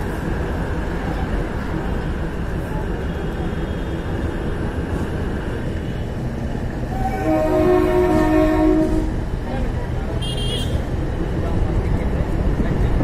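DEMU train running with a steady rumble of wheels on rail; about seven seconds in, a train horn sounds for about two seconds, followed by a brief high warbling sound.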